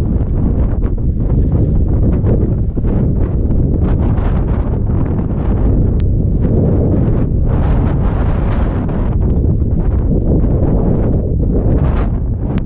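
Wind buffeting a GoPro Hero5 Black's microphone in a steady low rumble, with skis scraping and hissing through soft snow and a few sharp clicks.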